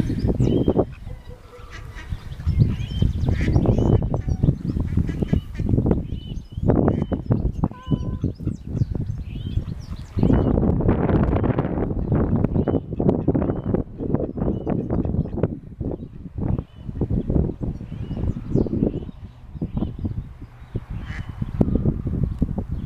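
Male mallard (drake) calling repeatedly with short quacks, over loud, uneven low rumbling noise.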